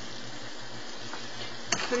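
Steady sizzling of food frying in a pan on the stove, with a light click near the end.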